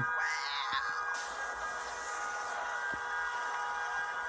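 Street sound from a phone video of a burning car: a steady, held tone of several pitches over background noise, with a hiss joining in about a second in.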